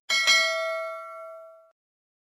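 Notification-bell sound effect of a subscribe-button animation: a bright bell ding, struck twice in quick succession, that rings out and fades away within about a second and a half.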